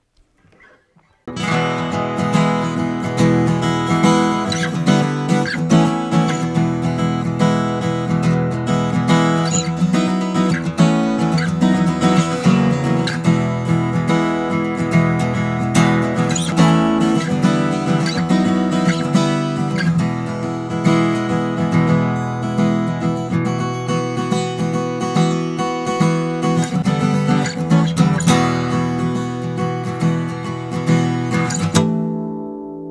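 Steel-string acoustic guitar played with a pick, a mix of strummed and picked chords, close-miked with condenser microphones. It starts about a second in and runs on as continuous playing.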